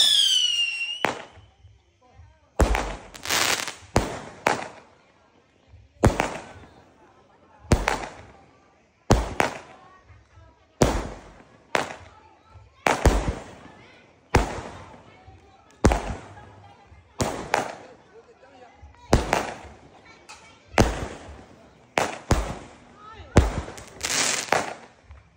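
A 49-shot consumer firework cake firing shot after shot, with a sharp bang every second or so, many of them in quick pairs as a tube launches and its shell bursts. In the first second a whistling tail falls in pitch.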